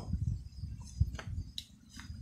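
Faint handling noise with a few light clicks about a second in and again near the end, as a fan's speed switch and its wires are turned over in the hand.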